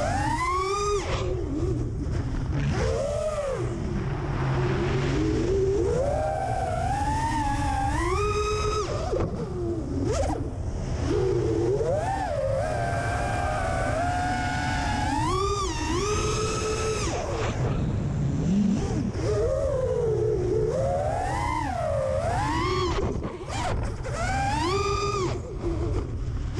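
Brushless motors (2306, 2500 kV) of a freestyle FPV quadcopter, heard from the quad itself. Their whine keeps swooping up and down in pitch as the throttle is punched and cut through flips and dives, over a steady low rumble of wind and prop wash.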